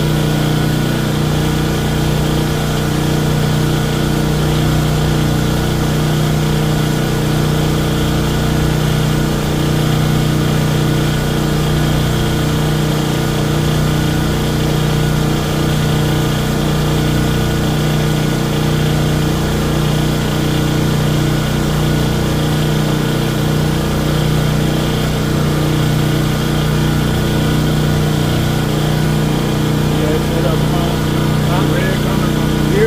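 Westinghouse 14,500-watt portable generator running steadily at constant speed, a continuous engine drone with a steady hum.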